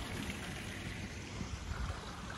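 Steady rush of a creek's running water, with low wind rumble on the phone microphone.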